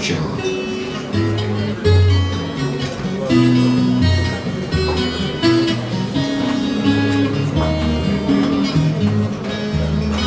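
Twelve-string acoustic guitar playing a song's instrumental introduction: picked and strummed chords over a bass line that changes note every half second or so.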